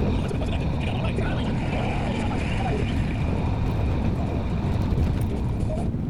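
Steady low rumble of a car driving slowly, heard from inside the cabin, with faint voices underneath.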